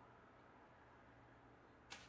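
Near silence: faint room tone, with one brief rustle of paper near the end.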